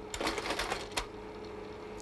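Slide projector changing slides: a quick run of small mechanical clicks ending in one sharp click about a second in, over a faint steady hum.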